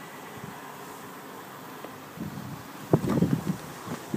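Faint steady hiss, then from about two seconds in, irregular rumbling of wind and handling noise on a phone's microphone as it is carried outside.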